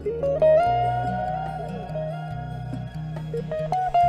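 Ibanez AFC151 archtop hollowbody electric guitar playing an improvised single-note melody. About half a second in, a note rises into a long held note, followed by short picked notes. Sustained low bass notes sound underneath.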